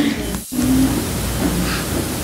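Wood-Mizer LT70 band sawmill running, a steady hum and rushing noise as the saw head is raised and retracted after a cut. The sound drops out for an instant about half a second in.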